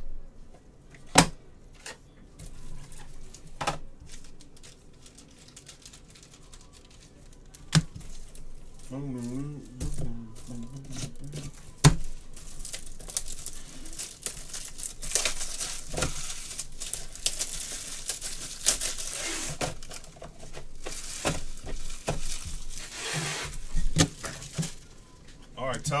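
A few sharp knocks on a tabletop, then from about halfway through a long stretch of plastic wrapping being torn and crinkled.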